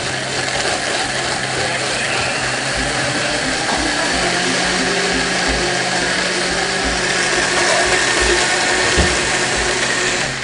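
Loud, steady running of a motor-driven coffee shop appliance, a continuous whirring hiss with a low hum.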